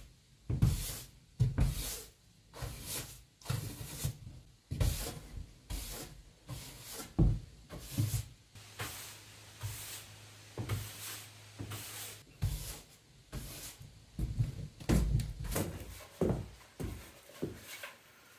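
A broom sweeping across charred wooden floorboards in repeated short strokes, about one and a half a second.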